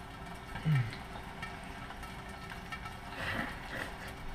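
Faint steady sizzle of a ribeye steak frying in a lidded pan on a gas burner. A short hum of a voice comes about a second in, and a soft rustle comes near the end.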